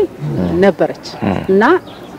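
A woman talking into a handheld microphone in short phrases with brief pauses between them.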